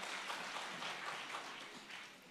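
Audience applauding, dying away gradually.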